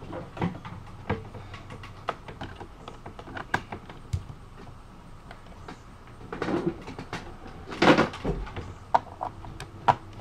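Scattered clicks and knocks of a laptop and its cables being handled, with louder bumps about six and a half and eight seconds in.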